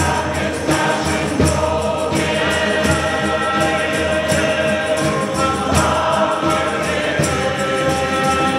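A choir singing a hymn in long held notes over a steady percussion beat, a little faster than one beat a second.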